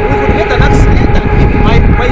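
Voices talking and exclaiming over a loud, steady low rumble, with a faint continuous hum that fades out near the end.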